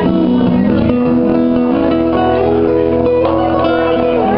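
Two acoustic guitars played together in a live performance, steady and unbroken, with held notes changing pitch every second or so.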